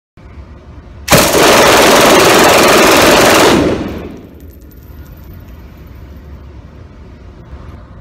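World War II-era MG42 machine gun firing one long unbroken burst of about two and a half seconds, its very high rate of fire running the shots together into one continuous ripping sound, echoing in an indoor range. A few light clinks follow as the echo dies away.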